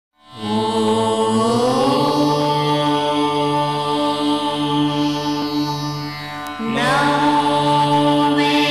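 Devotional chant music: a long held chanted note over a steady drone, gliding upward about a second and a half in. It breaks off briefly near the end and comes back with another upward glide.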